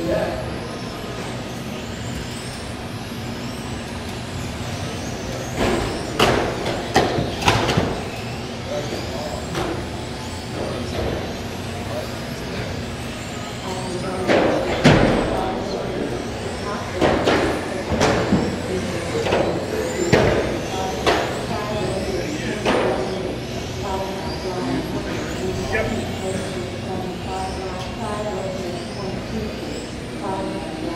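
RC touring cars racing on an indoor carpet track: their electric motors whine, rising and falling in pitch as the cars speed up and brake. Clusters of sharp knocks come about six seconds in and again from about fifteen to twenty-three seconds, over a steady background of voices in the hall.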